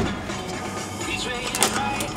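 Low steady hum inside a Chevrolet Suburban's cabin, with a few faint clicks about a second and a half in.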